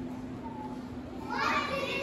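A child's voice starts speaking about a second in, after a short pause filled only by a low steady hum in the room.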